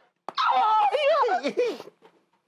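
A high, whining, dog-like whimpering cry that wavers and slides down in pitch over about a second and a half, starting just after a short click.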